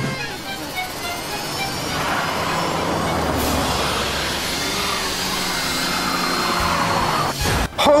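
Movie soundtrack: a car engine sound effect under background music, cutting off sharply near the end.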